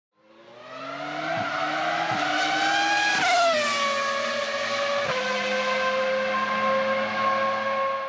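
A vehicle engine fading in and rising steadily in pitch for about three seconds. It then drops quickly and holds a steady note until it fades out at the end.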